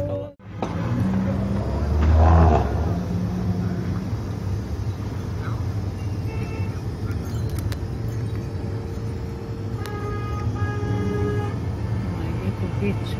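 Car cabin: the steady low rumble of the car's engine and tyres while driving, with a brief louder low surge about two seconds in. Near the end a held tone of several pitches sounds for about a second and a half.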